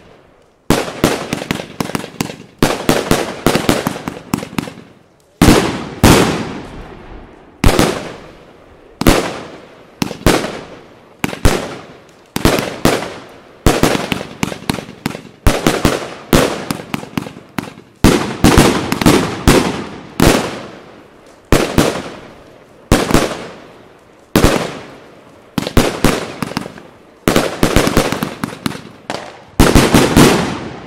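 A 100-shot 25 mm fireworks cake firing shot after shot, with a loud bang about every second or so as each shell bursts. Quieter cracks and a fading tail follow each bang.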